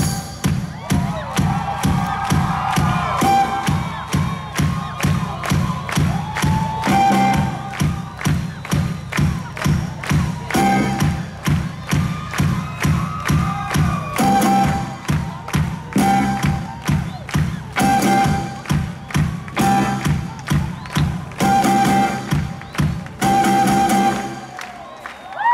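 Live rock band playing, heard from within the audience: drum kit keeping an even beat of about two hits a second under electric guitars and keyboards, with crowd noise mixed in.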